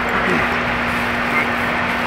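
Steady background hum with an even hiss behind it. No distinct event stands out.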